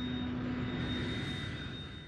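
Film soundtrack: a sustained low droning chord with a rushing noise that swells and then fades away near the end.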